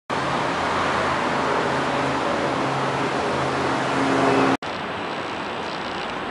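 Steady city traffic noise, a loud rushing with a low engine hum under it, that cuts off abruptly about four and a half seconds in to a quieter outdoor hiss.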